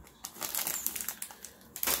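Plastic candy bags crinkling as they are handled, in irregular rustles, with a louder rustle just before the end.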